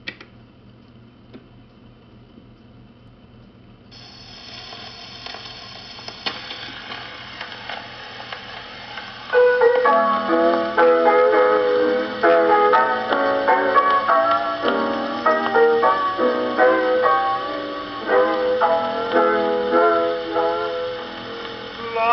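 Acoustic Columbia Viva-Tonal phonograph playing a 78 rpm shellac record: a click as the needle is set down at the start, record surface hiss from about four seconds in, then the piano introduction from about nine seconds in.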